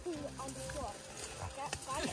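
Quiet, indistinct voices over the crackle of dry leaf litter and twigs as a person crawls on hands and knees through brush, with one sharp click of a twig near the end.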